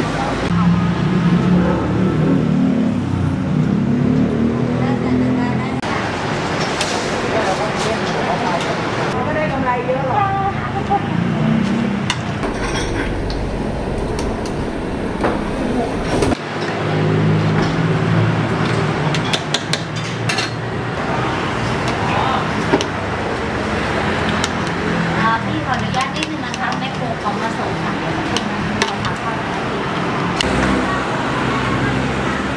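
Busy street-food stall ambience: people talking in the background over steady traffic noise, with scattered sharp clinks of a metal ladle and utensils against steel pots and bowls.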